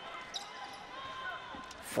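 Low basketball-arena crowd and court noise, with a basketball bouncing on the hardwood floor and a light knock about a third of a second in.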